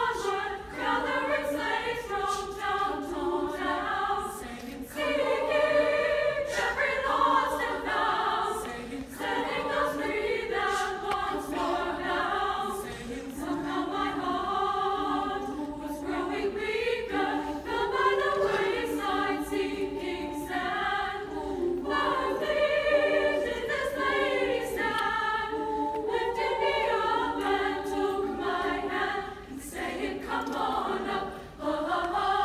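Women's choir singing in several parts, many voices sustaining chords together throughout.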